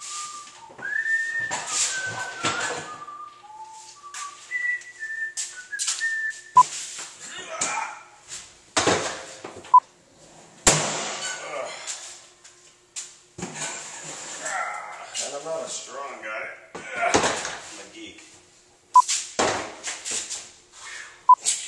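Someone whistling a tune in held, stepping notes for the first several seconds. Then hard plastic Pelican cases are handled and loaded, giving sharp knocks and thuds several times along with scuffing.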